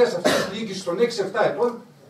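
Men's voices talking in Greek in a heated discussion, mostly unclear, with a brief pause near the end.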